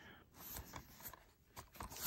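Near silence with faint handling noise: a few soft clicks and rustles as a plastic DVD case is turned over in the hand.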